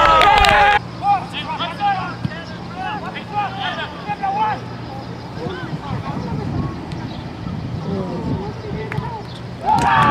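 Players' shouts and calls on an outdoor soccer pitch, heard at a distance, with a louder close voice for about the first second and again at the very end. The sound drops abruptly about a second in, where the footage is cut.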